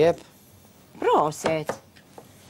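A knife slicing through a long marrow onto a plastic cutting board. A voice speaks briefly about a second in.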